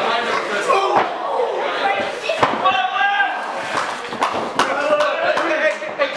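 Indistinct spectators' voices calling out and chattering, broken by a few sharp thuds of feet or bodies on a wrestling ring's canvas, the loudest about one second and about two and a half seconds in.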